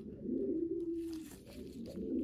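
A dove cooing: one low, soft coo held for about a second, then another beginning near the end.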